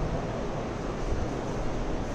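Steady background noise: an even hiss with a low rumble and no distinct events.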